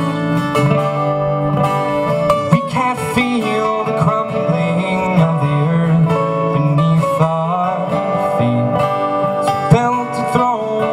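Two acoustic guitars playing an instrumental passage, one strumming chords while the other picks a moving melody line.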